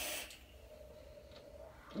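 Airy hiss of a deep draw through a vape's Kylin rebuildable tank atomizer on a GeekVape Aegis mod, cutting off shortly after the start.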